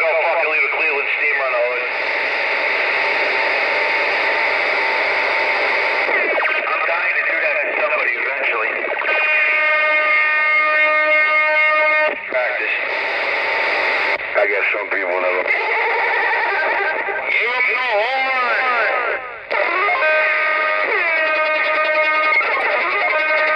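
Magnum S-9 CB radio on channel 19 playing a transmission over its speaker: music with guitar sounding thin and distorted through the radio, mixed with voice. The music has long held notes around the middle and again near the end.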